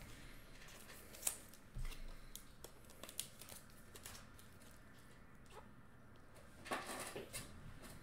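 Faint clicks and light rustling of a trading card and a clear plastic card holder being handled, with a soft thump about two seconds in.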